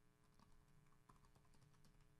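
Computer keyboard typing, heard as a run of faint, irregular key clicks.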